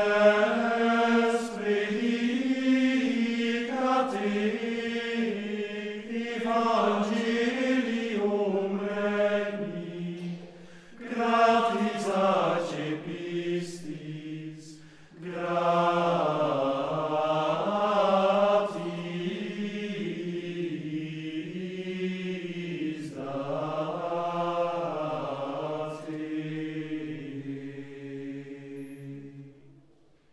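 Men's choir singing Gregorian chant in unison, a cappella, in flowing phrases with short pauses for breath about 11 and 15 seconds in. A long held final note fades out near the end.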